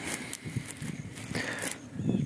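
Clothing rustling and handling noise against a clip-on microphone: a run of irregular crackles and scrapes over a low rumble.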